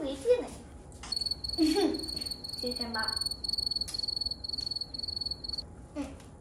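Cricket chirping: a steady, high, rapidly pulsing trill that starts about a second in and stops shortly before the end.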